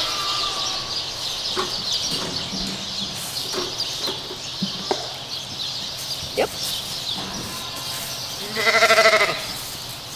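A sheep bleats once near the end, a single wavering bleat lasting under a second. Behind it is a steady high-pitched background chatter, with a few soft rustles and clicks.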